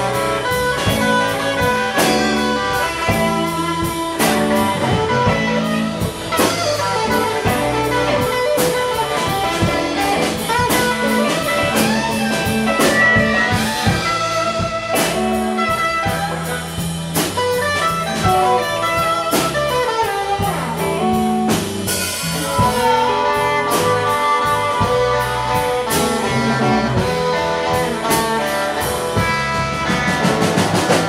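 Live blues band playing an instrumental passage: electric guitars, electric bass and a drum kit, with a blues harmonica playing along.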